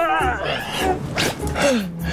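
Wordless human vocal sounds: a wavering cry in the first half second, then a few short exclamations as one person hugs and lifts another.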